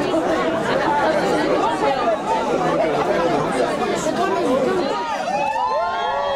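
A crowd of people outdoors all talking at once, a dense babble of overlapping voices. Near the end a few clearer, drawn-out voices rise above it.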